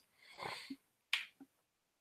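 A quiet pause between speech: a faint soft breath, then a single short click a little after a second in.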